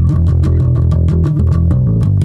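Yamaha electric bass guitar playing a fast bass line, about ten evenly plucked notes a second, with the low notes shifting in pitch.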